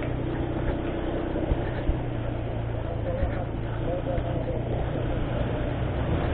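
Motor scooter engine running steadily at low speed, with road noise, heard from the rider's own scooter.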